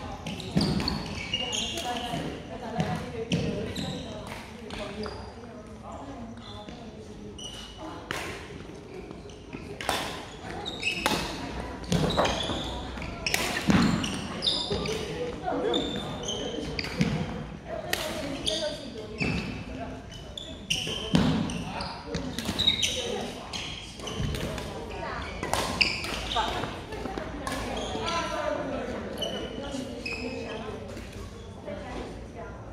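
Badminton doubles rally: rackets striking the shuttlecock in sharp, unevenly spaced hits, with footfalls on the wooden court floor, echoing in a large hall.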